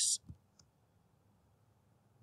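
A faint single computer mouse click, about half a second in, followed by near silence.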